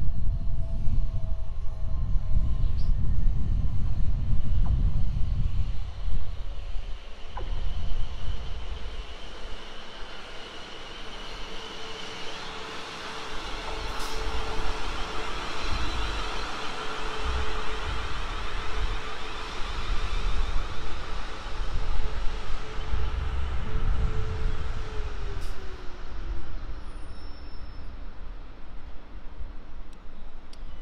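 A South Western Railway electric multiple unit arriving and slowing into the station: the rumble of wheels on the rails, with a steady motor whine that drops in pitch near the end as the train comes to a stop.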